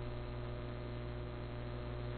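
Steady electrical mains hum in the recording: an even low drone made of several steady tones, with faint hiss above it.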